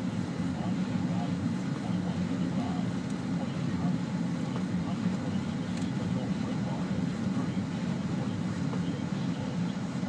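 Steady low drone of a Jeep Liberty's engine and tyres, heard inside the cabin while driving on a snow-covered road.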